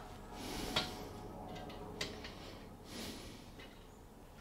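Quiet handling sounds: soft rustling with two light clicks, just under a second in and again at two seconds, as small tools are picked up and handled.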